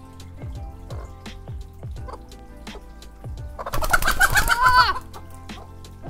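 A Silkie chicken gives one loud, wavering call lasting over a second, about halfway through, over faint background music.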